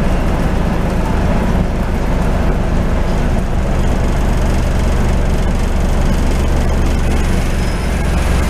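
Scania N94UD double-decker bus's 9-litre five-cylinder diesel engine running steadily, heard from inside the passenger saloon with a deep, even hum and road and body noise over it.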